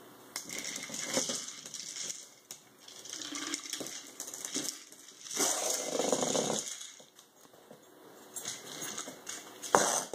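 A puppy's claws clicking and scrabbling on a laminate floor as it pushes a hard plastic ball around, the ball rolling and knocking across the boards in uneven bursts. There is one sharp knock near the end.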